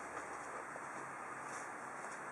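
Quiet, steady background room tone with no distinct event; the subwoofer is not yet playing.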